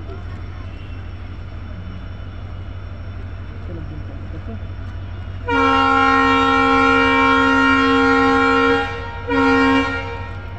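Horn of a WDP4D diesel locomotive sounding a chord of several notes: one long blast of about three seconds starting a little past the middle, then a short blast near the end, over a steady low rumble.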